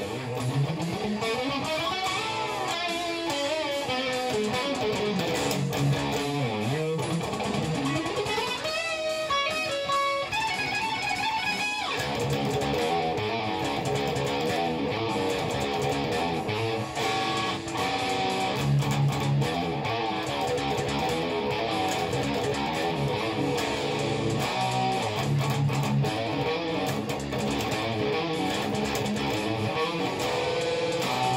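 Electric guitar with 24 frets, played through an amp as the lead part over the song's backing track coming from a computer. For about the first twelve seconds fast runs sweep up and down the neck, then the playing settles into a fuller, denser passage with held notes.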